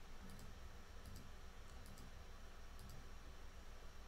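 Faint, scattered computer clicks, several of them, over a low steady room hum, as the photos being browsed on screen are changed.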